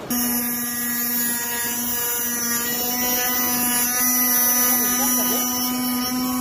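A 12 V 775 DC motor spinning a small cutting disc at steady speed, giving a steady whine, as the disc grinds through a bundle of thin metal rods.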